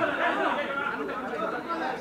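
Indistinct chatter of several voices talking at once, softer than the main speech around it.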